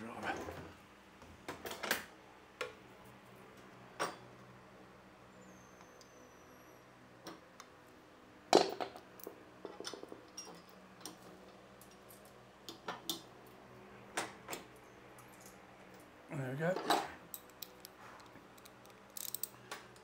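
Scattered metal clinks and knocks as bolts, spacers and a motorcycle luggage rack are handled and fitted by hand. The loudest knock comes about eight and a half seconds in.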